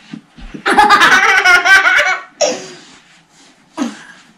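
A child laughing loudly, a pulsing burst of about a second and a half starting just under a second in, followed by shorter bursts of laughter.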